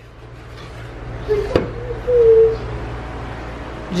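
Kitchen handling noise with a single sharp knock about a second and a half in, over a steady low hum that grows slowly louder.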